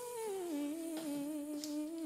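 A person humming one long held note, with no accompaniment; the pitch slides down about halfway through and then holds at the lower note.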